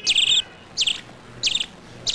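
A bird calling three times, about two-thirds of a second apart, each call a sharp high note sweeping down into a quick trill.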